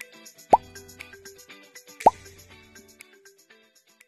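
Two loud pop sound effects, each a quick fall in pitch, about a second and a half apart, on a like-and-subscribe button animation. Light background music plays under them and fades out near the end.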